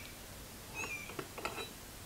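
Faint light clicks of small steel parts being handled on a workbench as a bending jig is taken apart, with a couple of short, faint high chirps in the background.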